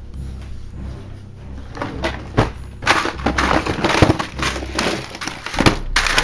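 Plastic blister packaging crinkling and crackling, with objects knocking about as it is rummaged through. The crackle gets much busier and louder about halfway through.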